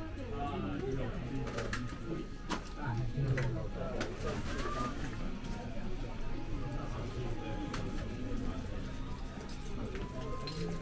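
Indistinct murmur of low voices inside a busy shop, with a few sharp clicks, the clearest a little after two seconds and at four seconds.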